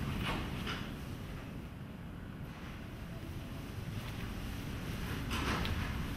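Low steady rumble with faint rustling as an N95 respirator is handled and its elastic straps are pulled over the head, with a louder rustle near the end as the mask is settled on the face.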